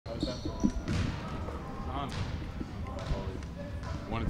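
Basketballs bouncing in a gym, a run of uneven thuds, under faint voices talking in the room.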